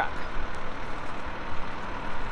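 Fire engine running steadily, a low even engine noise with no distinct beats or clicks.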